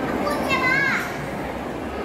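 A child's high voice calls out once, briefly, about half a second in, rising and then falling in pitch, over a steady background of people talking.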